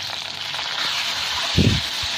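Potato wedges sizzling steadily in hot mustard oil in a wok, with a single dull knock near the end.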